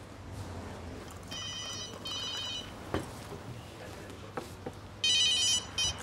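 Mobile phone ringtone: two short electronic rings a little over a second in, then a longer warbling ring about five seconds in, over quiet room tone.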